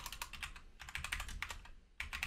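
Typing on a computer keyboard: a quick, faint run of keystroke clicks.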